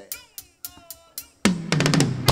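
Live cumbia band kicking off a song: a few sharp drum hits, then about a second and a half in the whole band comes in loudly with bass, drum kit, percussion and horns.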